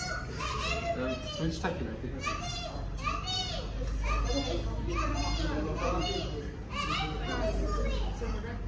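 A young child's high-pitched voice calling out over and over, about once a second. A steady low hum runs underneath and grows stronger about halfway through.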